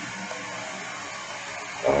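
Steady background hiss with no pitch or rhythm, and a man's voice coming in near the end.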